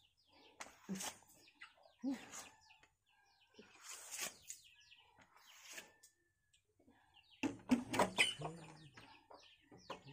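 Birds calling: many short, high chirps throughout, busier and louder from about seven and a half seconds in.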